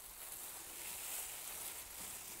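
Faint, steady crinkling and rustling of thin plastic food-prep gloves handling vine leaves as they are rolled into koupepia, over a soft hiss.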